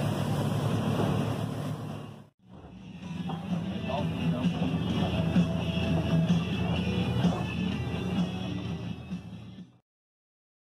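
Music playing over the steady low drone of a boat's outboard engines running under way. The sound breaks off for a moment about two seconds in and stops just before the end.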